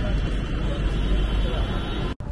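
Several farm tractors' diesel engines running together in a loud, steady, deep rumble.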